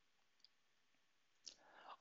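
Near silence: room tone in a pause of the narration, with a couple of faint short clicks.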